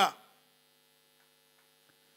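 Faint, steady electrical mains hum from the microphone's sound system, heard once a man's voice breaks off right at the start.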